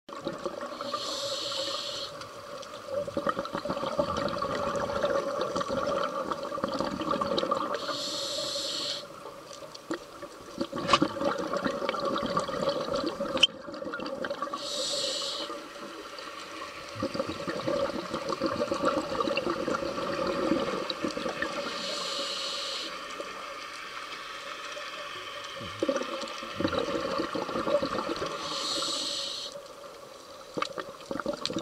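Scuba diver breathing through a regulator: a short hiss of inhalation about every seven seconds, each followed by a longer rush of exhaled bubbles.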